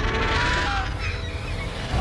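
Trailer sound effect: a rushing whoosh in the first second, with a falling whine in it, over a low rumble.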